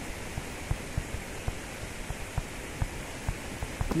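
Stylus tapping and sliding on a tablet screen while handwriting, heard as small irregular taps over a steady background hiss.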